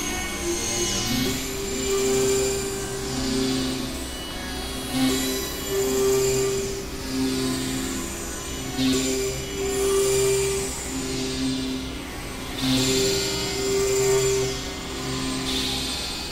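Experimental electronic drone music from Novation Supernova II and Korg microKorg XL synthesizers: sustained low tones that shift pitch every second or so, with a noisy, hissing swoosh returning about every four seconds.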